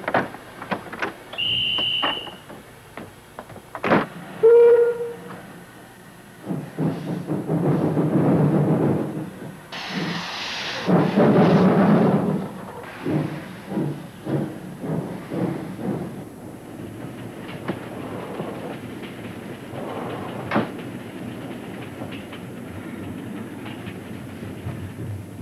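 A passenger train departing: a short shrill whistle about a second in, a sharp slam at four seconds, then a lower whistle blast. Loud bursts of noise follow as the train gets under way, then a rhythmic clatter of wheels over the rail joints that settles into a steady rolling rumble.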